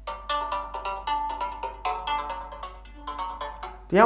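A Realme GT Master Edition phone playing a built-in ringtone through its single bottom loudspeaker: a quick melody of short, bright chiming notes.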